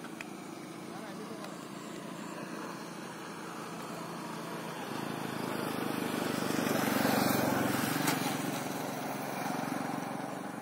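A vehicle passing close by: its noise swells over several seconds to a peak about seven seconds in, then fades.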